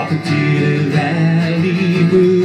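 Steel-string acoustic guitar strummed in steady chords, an instrumental passage between sung lines.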